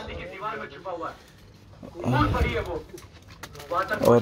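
Indistinct voices talking quietly, with a low bump about two seconds in.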